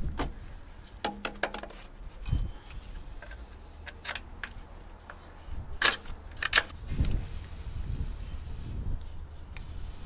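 Scattered metallic clinks and knocks of a wrench and engine parts being handled while a drive belt is fitted to the alternator of a diesel engine. The sharpest clinks come about six seconds in, over a low steady rumble.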